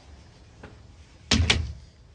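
A door shutting: a faint click, then two heavy thuds in quick succession a bit over a second in.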